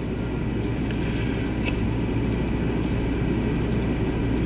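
Steady low rumble of room background noise with a constant low electrical hum underneath and a few faint clicks.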